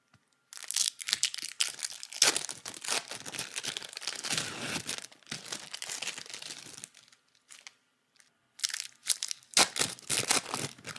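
Close-up ASMR crackling and crinkling sound effect: a dense, irregular run of small clicks and rustles that stops about seven seconds in and resumes after a short pause.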